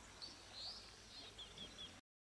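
Faint outdoor ambience with a small bird chirping: a rising call early on, then a run of about five short quick chirps in the second half.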